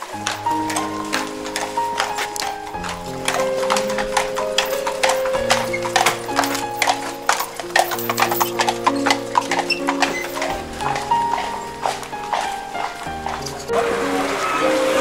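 Horses' hooves clip-clopping on a paved street as a two-horse carriage passes close by, a dense run of sharp clops. Background music with held, slowly changing chords plays over it, starting suddenly at the beginning.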